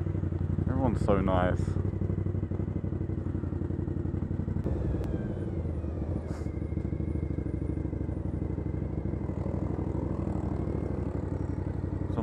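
A motorcycle engine running steadily at low revs, heard close up from the rider's own bike, with a sudden change in the sound a little under five seconds in.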